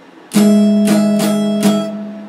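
Electric guitar: a chord struck about a third of a second in, followed by three more quick picked strokes while the low note keeps ringing, then the sound fades away near the end.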